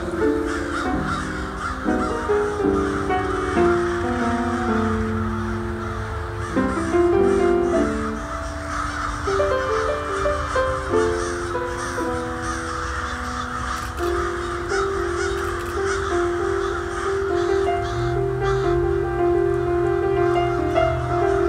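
A large flock of crows cawing continuously, many birds at once, under instrumental background music with a slow melody of held notes. A low held tone joins the music near the end.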